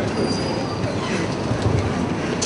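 Steady background noise of a large hall, with no single clear event.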